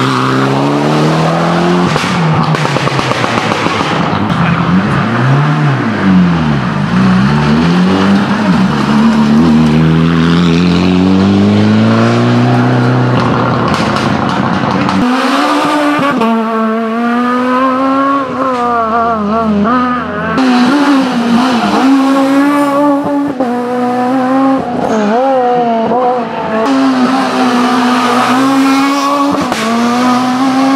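Rally car engines at full effort on a closed stage: first a Mitsubishi Lancer Evolution X's turbocharged four-cylinder, its pitch dropping and then climbing steadily as it accelerates out of a corner. About halfway in the sound switches to a Renault Clio rally car's engine, revving hard with a pitch that rises and falls through the gear changes.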